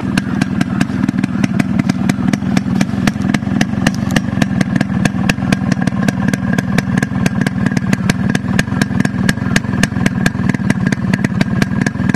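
Yamaha RX100's two-stroke single-cylinder engine idling steadily, its exhaust crackling with sharp irregular pops several times a second.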